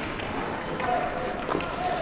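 Ice rink sound during hockey play: a player's long held shout across the ice, over the scrape of skates, with a sharp stick knock about one and a half seconds in.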